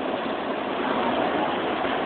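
Heavy wind-driven rain of a violent thunderstorm, a steady rushing noise.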